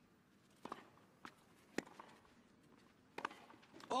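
Tennis ball struck by rackets during a rally on a clay court: the serve about two-thirds of a second in, a bounce, the return, then a hard forehand a little after three seconds, each a single sharp pop.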